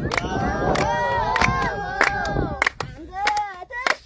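Several voices singing and chanting together over steady rhythmic hand-clapping, roughly one or two claps a second.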